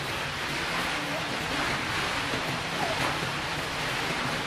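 A steady rushing hiss of outdoor background noise, with faint voices in the distance.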